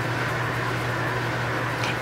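Steady background hum and hiss of room noise, even throughout with no distinct events.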